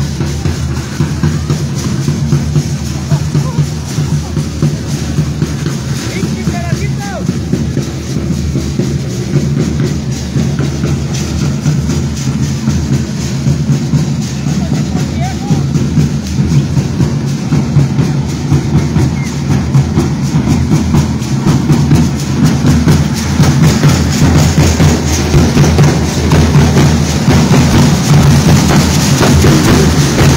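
A drum band of bass drums and other hand-held drums played with sticks, beating a fast, steady dance rhythm for a danza. The drumming grows louder toward the end.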